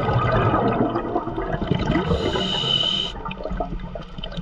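Scuba regulator heard underwater: a diver's exhaled bubbles gurgling for about two seconds, then a short hiss of breath drawn through the regulator that stops about three seconds in.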